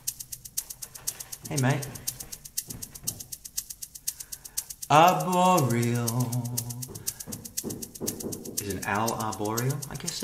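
Boss Rhythm Partner drum machine playing a quick, steady shaker-like rhythm. A man's voice breaks in over it three times, loudest about five seconds in.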